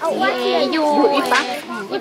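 A woman talking, with several children's voices overlapping hers.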